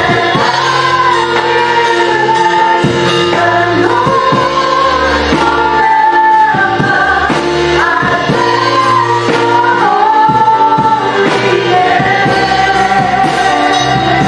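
Worship band playing live: women singing the melody together with backing voices, over electronic keyboard, electric guitars and a drum kit keeping a steady beat.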